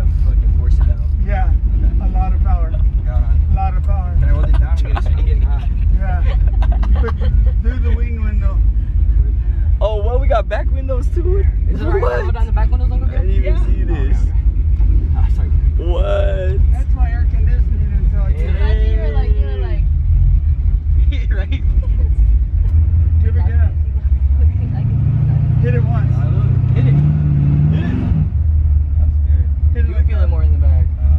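Steady low rumble of a car's engine and road noise heard inside the cabin, with voices over it. About 25 seconds in, the engine note rises in pitch for about three seconds, then drops back to the steady rumble.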